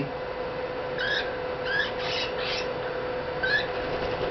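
Cockatiel giving about five short, sharp chirps spread across a few seconds while held in its owner's hands, over a faint steady background hum.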